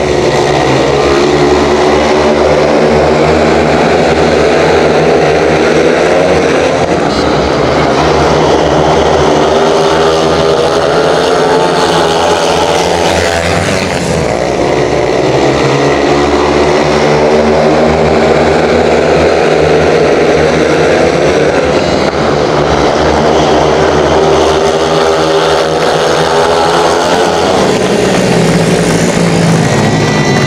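Speedway motorcycles racing: 500 cc single-cylinder methanol-burning engines running hard, their pitch sweeping down and up again over and over as the riders lap the track.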